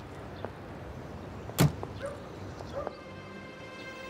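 A car door of a Soviet Zhiguli sedan slams shut once about one and a half seconds in, with a few light clicks and scuffs around it. Faint sustained music notes come in near the end.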